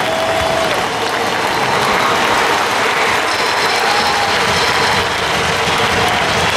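Large stadium crowd applauding and cheering, a steady dense wash of clapping and voices, with a few faint held tones sounding over it.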